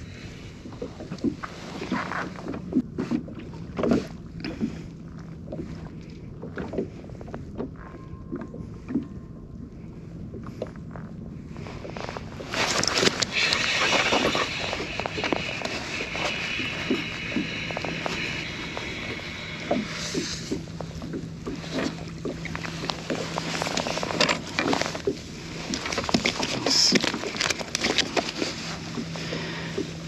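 Gear being handled in a fishing kayak: scattered small knocks and clicks, then from about twelve seconds in a louder, steady rushing noise that runs on with a few more knocks.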